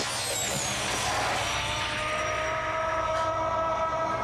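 Horror-film sound effects: a loud rushing noise with a high whistle falling in pitch, giving way to a held chord of steady tones that sink slightly in pitch.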